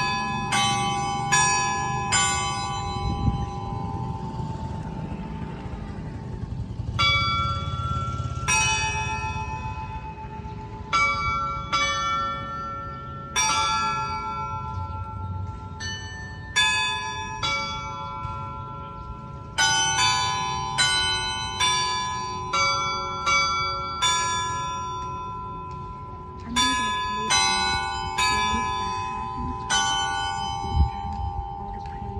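A set of church bells cast by the Antica Fonderia De Poli, hung in an open steel frame, struck in a festive repique: irregular strokes of different bells whose tones overlap and ring on. There is a lull of a few seconds early on, then the strokes come quicker and closer together in the second half.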